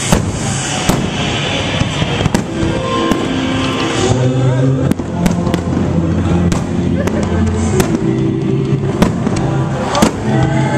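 Aerial fireworks shells bursting in a rapid, irregular series of sharp bangs, more than a dozen, with music playing underneath.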